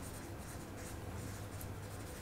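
Marker pen writing on paper flip-chart sheets: faint strokes of the felt tip against the paper as words are written.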